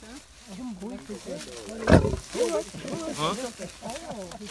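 A lion calling once, short and loud, about two seconds in, with people talking around it; the recording is heard played back over a hall's sound system.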